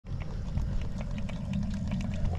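Live blue crabs clicking and scratching against the sides of a bushel basket: a run of light clicks, about four or five a second, over a steady low rumble.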